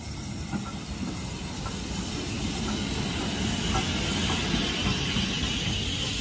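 Steam locomotive and its carriages rolling slowly into a station: a steady low rumble of wheels on rail, with a hiss of steam that builds from about two seconds in and is loudest near the end as the engine draws alongside.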